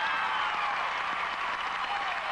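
Arena audience applauding, with faint voices over the clapping.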